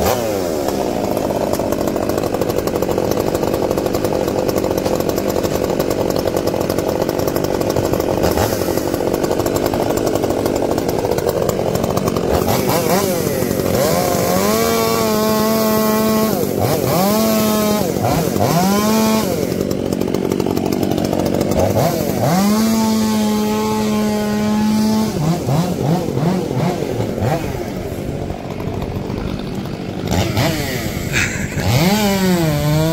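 Gas two-stroke Stihl chainsaws running. For the first dozen seconds they cut through log wood under load, a dense, even engine sound. After that the throttle is blipped about four times, each time revving up to full speed, holding and dropping back, the last held about three seconds.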